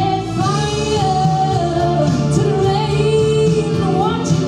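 Solo female vocalist singing live into a microphone over instrumental accompaniment, holding long notes that glide between pitches.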